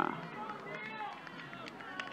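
A short spoken "uh" close to the microphone, then a low bed of faint, distant voices talking in the background.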